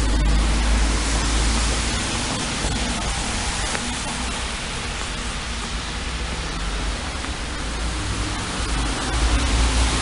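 Steady rushing wind noise on the microphone, with a strong fluctuating low rumble.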